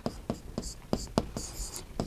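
Writing on a classroom board: a string of short taps and a few brief scratches as the numeral III is written and circled.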